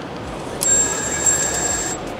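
Singapore MRT ticketing machine beeping: one long high electronic beep starting about half a second in, over low station background noise.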